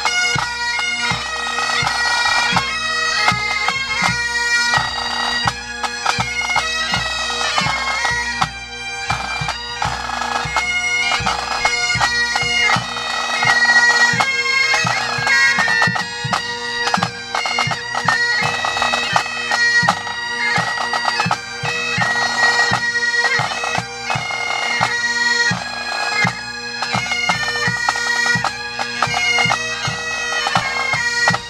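Pipe band playing: several Highland bagpipes sounding a tune over their steady drone, with snare and bass drums beating along.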